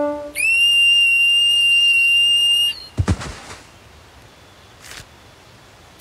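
Cartoon screech of terror rendered as a steady, piercing whistle-like tone, held for about two seconds and cut off sharply, followed just after by a dull low thud.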